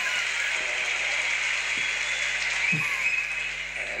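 Theatre audience applauding: a dense, steady clapping that starts to die down near the end.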